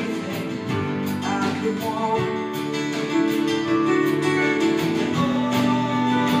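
Acoustic guitar strummed in a steady rhythm in a slow song, its chords ringing between strokes.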